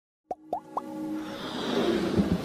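Logo-intro sound effects: three quick pops, each rising in pitch, about a quarter second apart, starting about a third of a second in, then a synth swell that builds steadily louder.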